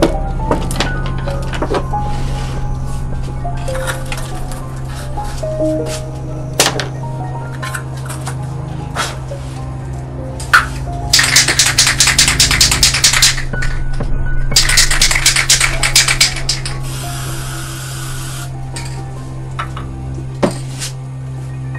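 Aerosol spray-paint can shaken in two rattling bursts of about two seconds each, then a short steady hiss of spray, over background music.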